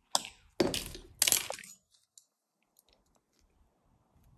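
Needle-nose pliers gripping and bending stiff wire into a loop: three short, harsh scraping crunches in the first second and a half, then near quiet.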